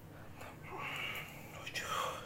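A man breathing out hard with the effort of overhead dumbbell extensions: one long breathy exhale about half a second in and another starting near the end.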